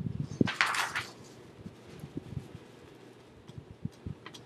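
A brief burst of paper rustling about half a second in, then faint scattered taps and clicks from work at a desk.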